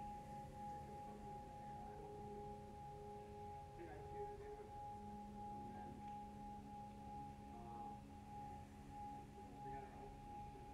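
Faint ambient background music of long, held, bell-like tones layered together, with a lower tone shifting about halfway through.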